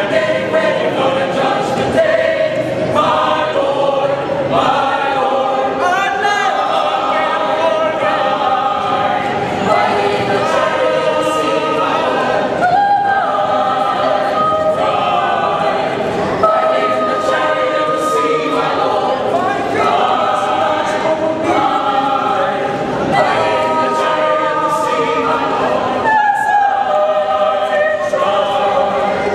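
Mixed choir of men and women singing together in several-part harmony, with many voices on different pitches at once.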